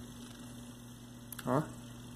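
A steady low electrical hum, with one short spoken word a little after halfway.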